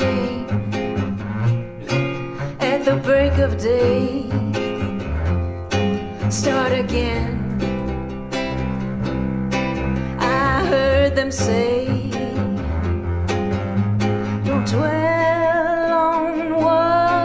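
Live acoustic folk music: strummed acoustic guitar and upright bass under a wavering violin melody, with a strong held note entering near the end.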